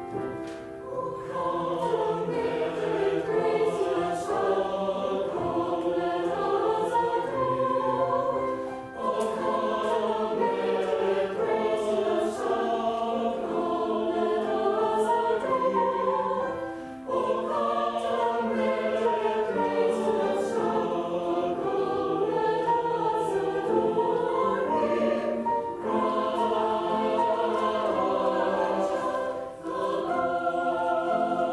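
Mixed choir of men's and women's voices singing in harmony. The phrases break briefly three times.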